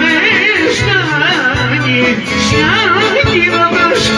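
Greek folk band playing: a clarinet runs a wavering, heavily ornamented melody over a steady bass and rhythm accompaniment, with a man singing into a microphone.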